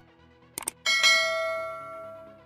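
Subscribe-button sound effect: two quick clicks, then a single bell chime struck about a second in, ringing and fading away.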